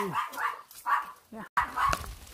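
A dog barking several times in quick succession, short barks about half a second apart.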